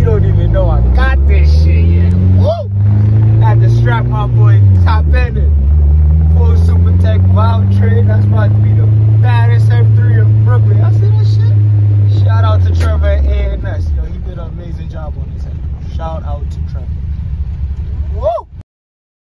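Car engine heard from inside the cabin while driving: a steady drone that rises in pitch about four seconds in, holds, then falls and goes quieter about thirteen seconds in as the car slows.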